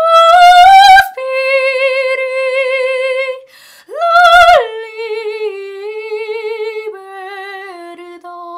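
A woman singing a classical Italian song solo and unaccompanied, in a trained voice with vibrato. She holds long notes, takes a short breath a little past three seconds in, swells into a loud high note around four seconds, then steps down through lower held notes.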